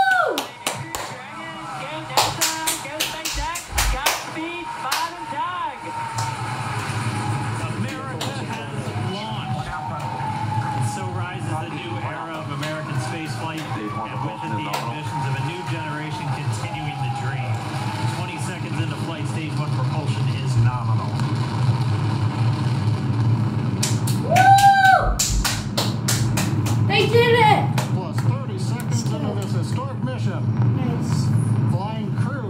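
A Falcon 9 rocket's liftoff heard through computer speakers playing the launch webcast: a steady low rumble that grows louder as the rocket climbs. Short whooping cheers at the start and again near the end, with a burst of clapping a few seconds in.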